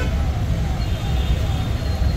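Steady low rumble of road traffic, with no distinct horn or engine standing out.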